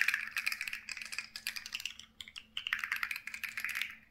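Plastic fidget toys handled close up: dense, rapid plastic clicking and crackling in two runs with a short break about halfway.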